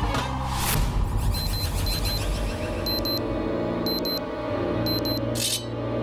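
Dramatic background music with a whoosh about half a second in and another near the end, over short high beeps coming in pairs about once a second.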